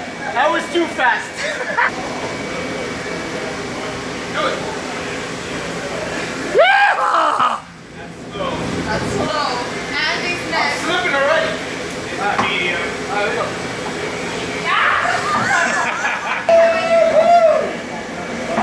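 Onlookers' voices shouting and whooping over indistinct chatter, with one loud rising whoop about seven seconds in and a long held call near the end.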